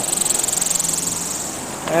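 Homemade wind turbine's 104 cm two-bladed carved wooden prop spinning fast in gusty wind: a steady whir with a fast, even flutter and a faint low hum.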